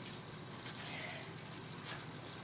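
Faint steady hiss of background noise, with no distinct sound standing out.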